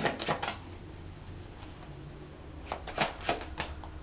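Tarot cards being shuffled by hand: a few quick flicks at the start, a pause, then a short run of crisp card snaps about three seconds in.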